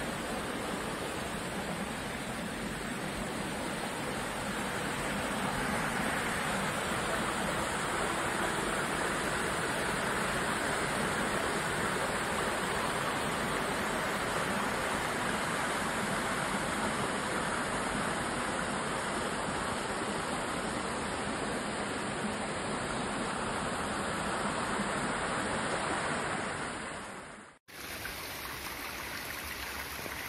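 Steady rushing of a rocky stream cascading below a waterfall, white water pouring between boulders. Near the end the sound cuts off for an instant and comes back softer.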